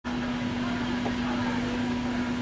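Steady background hiss and hum with one constant low tone, before any music.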